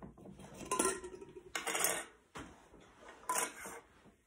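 Glass Mason jars being handled on a table, clinking and scraping in three short bursts.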